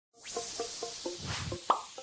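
Animated logo intro sting: a swelling whoosh under a run of short, pitched plucked blips about four a second. A sharp hit with a quick rising tone comes near the end and is the loudest moment.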